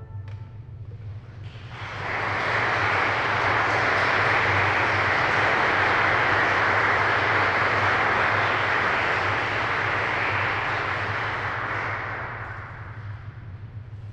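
Audience applauding at the end of a live chamber-music performance. The clapping starts about a second and a half in and dies away near the end, over a steady low hum.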